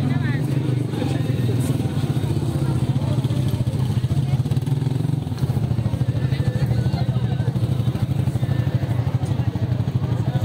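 Motorcycle engine running steadily at low revs close by, a continuous low drone, with crowd voices over it.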